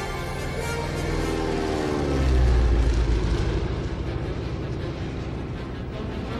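Orchestral film score mixed with the engine of a biplane seaplane taking off. The engine drone falls in pitch about two seconds in, followed by a loud low rumble.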